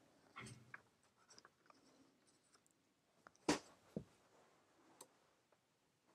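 Quiet handling noises from someone reaching into a cardboard box on a carpeted floor: faint rustling, with one sharp tap about three and a half seconds in and a softer knock just after.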